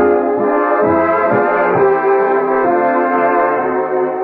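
Radio studio orchestra playing brass-led music, with sustained full chords that shift from one to the next.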